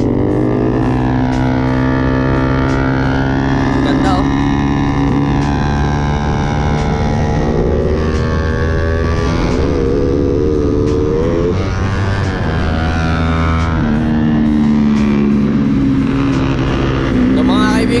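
Suzuki Raider 150 single-cylinder motorcycle engines running at speed, heard from a bike on the move. The engine note climbs and drops several times with throttle and gear changes.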